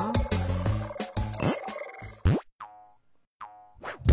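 Cartoon soundtrack music with percussive hits that breaks off a little past halfway, followed by two quick rising sound-effect swoops about a second and a half apart with near silence between them.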